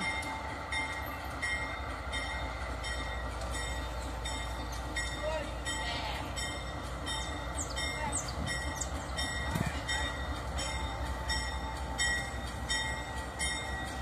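GE AC44i diesel-electric locomotives running as they haul a loaded freight train slowly toward the listener, a steady low rumble. A faint regular ticking, about twice a second, runs over it.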